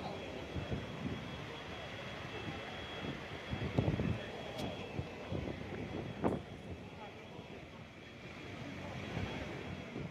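Steady engine and road noise from a moving vehicle, picked up by a phone microphone inside it, with a sharp knock about six seconds in.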